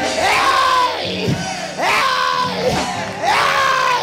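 Church congregation calling out during a sermon's climax: three long pitched vocal cries about a second and a half apart, each swelling and then falling away, over crowd shouting and sustained low chords from the church's musicians.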